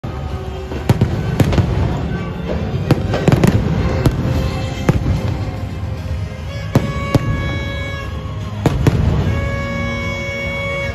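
Stadium celebration pyrotechnics going off in a string of sharp bangs, most of them in the first half, over a steady crowd din. Music over the stadium sound system comes in with held notes during the second half.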